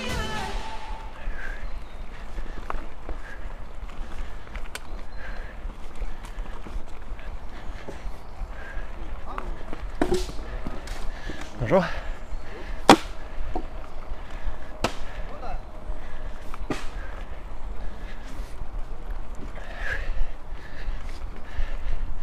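Mountain bike rolling fast down a dirt and gravel track: a steady rumble of the tyres, with sharp clicks and knocks as stones and bumps rattle the bike. The loudest knock comes a little past the middle.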